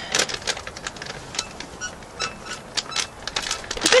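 Crinkling and crackling of a bag of fried onions being handled and opened, an irregular run of crisp rustles, with a spoken word right at the end.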